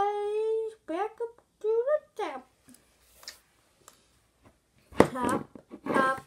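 A young girl's voice making wordless vocal sounds: a long held note in the first second, two short rising sounds after it, a pause of a few seconds, then more voice near the end.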